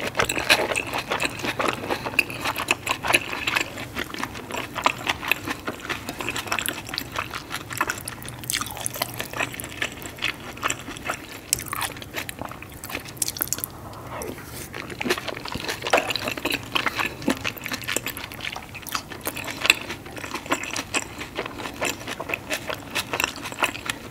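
Close-miked chewing and wet mouth sounds of someone eating sauce-drenched seafood: a steady run of small smacks and clicks, louder for a moment about eight and again about sixteen seconds in.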